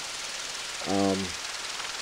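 A man's single hesitant "um" about a second in, over a steady background hiss.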